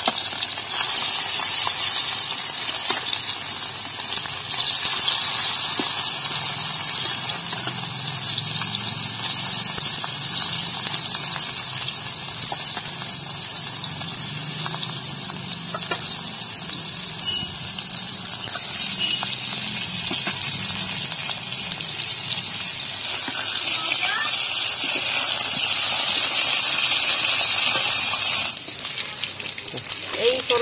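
Pieces of snakehead fish sizzling steadily as they fry in hot oil in a wok. The sizzle grows louder for a few seconds shortly before the end, then drops off abruptly.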